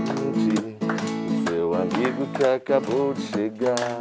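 Acoustic guitar strummed in a steady rhythm, accompanying voices singing a children's song.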